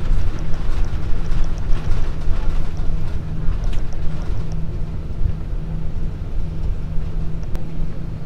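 Cabin noise of an Airbus A340-300 taxiing, its CFM56 engines at idle: a steady low rumble with a constant hum. Faint light ticking over the first half.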